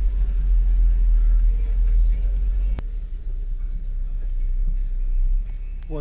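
Steady low rumble of a van's engine and road noise heard inside the cab while driving slowly through traffic, with a single sharp click about halfway through.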